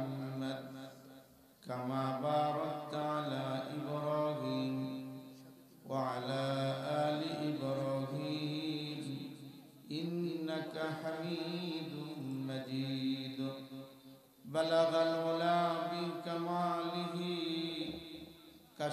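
A man's voice chanting the Arabic durood (blessing on the Prophet) in long, melodic, drawn-out phrases of about four seconds each, with short breaths between them.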